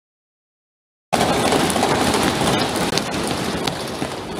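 Dead silence for about a second, then suddenly a loud, dense din of many members of parliament thumping their wooden desks together.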